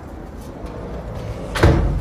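A single loud thump about one and a half seconds in, over a low steady rumble.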